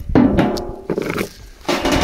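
A sheet-metal hive lid being set down on a wooden beehive, then stones laid on the metal: three rough knocking and scraping bursts, the first just after the start, another about a second in, and one near the end.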